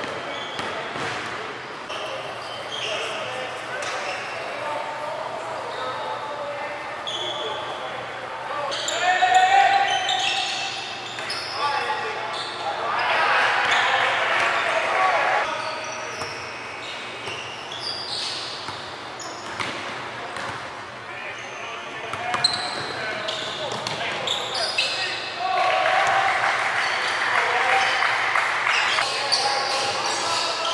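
Live game sound in a gym: a basketball bouncing on a hardwood court amid players' voices calling out, echoing in the large hall. The voices swell into louder shouts a few times.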